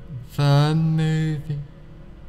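A man's voice in slow, drawn-out, chant-like speech: one phrase from about half a second in to about a second and a half in, the soothing delivery of a hypnotist guiding a trance.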